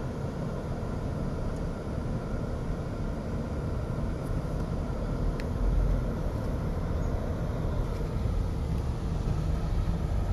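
Steady low rumble of a car driving slowly, heard from inside the cabin: engine and tyre noise with no sharp events.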